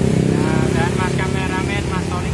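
Men's voices talking over the low running of a nearby motor-vehicle engine, which eases off shortly after the start.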